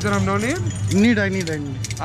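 A man's voice calling out in long, swooping sung tones, with several sharp metallic clinks and jingles.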